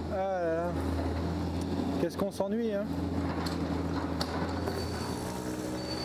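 A vehicle engine running with a steady low hum. Two short warbling sounds come over it, one just after the start and one a little after two seconds in.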